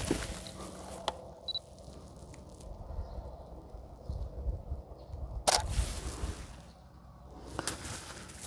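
Single-lens reflex camera in use: a light shutter click about a second in, a short high double beep just after, then a louder shutter click at about five and a half seconds and another near the end, over a faint low rumble.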